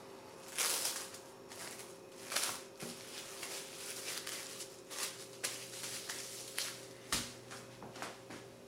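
Cling film crinkling and crackling in a series of short bursts as it is folded and pressed by hand around a ball of dough.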